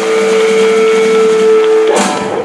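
Electric guitar holding one long sustained note at the close of a live rock song, steady in pitch, cut off abruptly near the end.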